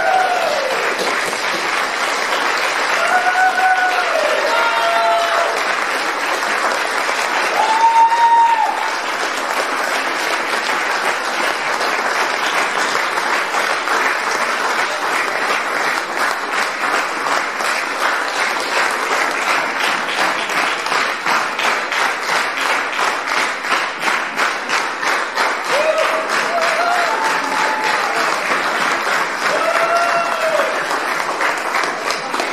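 Audience applause in a hall, with a few shouted cheers over it. About halfway through, the clapping settles into a steady rhythm in unison.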